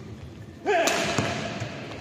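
Badminton rally: about two-thirds of a second in, a player lets out a loud shout, with the sharp crack of a racket striking the shuttlecock just after it, and the sound dies away over about a second in the hall.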